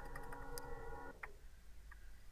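Faint, separate clicks of computer keyboard keys as digits are typed in, a handful of keystrokes in the first second and a half.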